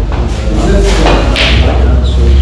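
A pool shot on a sinuca table: the cue striking the cue ball and balls knocking together, over background voices and a steady low hum.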